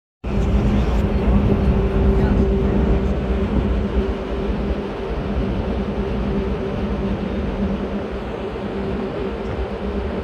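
Tugboat's diesel engine running steadily underway: a low drone with a steady hum, over a continuous rush of water past the hull.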